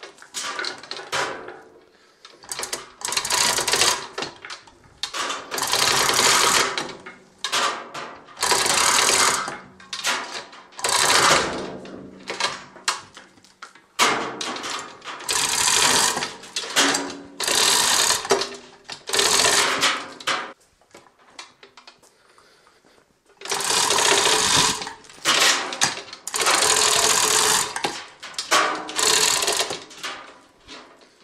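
Half-ton manual chain hoist being hauled hand over hand under the load of a roughly 650 lb milling machine: the chain runs through the hoist in bursts of one to three seconds, with short pauses between pulls and a longer pause of about two seconds after two-thirds of the way through.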